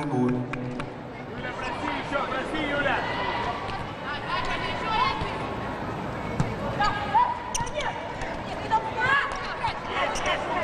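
Volleyball rally in an indoor arena: the ball is struck sharply a few times late on, over the steady sound of crowd voices and shouts.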